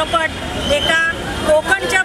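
A woman speaking into press microphones, with a steady low rumble of street traffic underneath.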